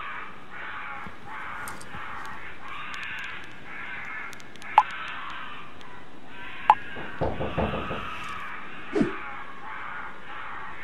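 Strange noises in a dark bedroom at night: two short sharp blips about five and seven seconds in, then a quick run of knocks and a short falling creak near the end, over a steady background hiss.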